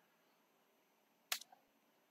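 Near silence with a single short, sharp click a little over a second in: a computer mouse click advancing the presentation slide.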